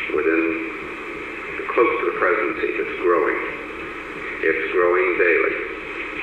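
A man's voice played back from a 1973 Nixon White House tape recording, thin and muffled with the low and high ends cut off, as on an old secretly made reel-to-reel tape.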